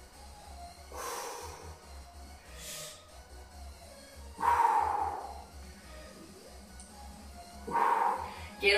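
A woman's forceful exhalations during push-ups, four breaths out with the third the loudest, over faint background music with a pulsing bass.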